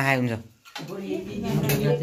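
Spoons against steel plates and bowls, with voices talking over them.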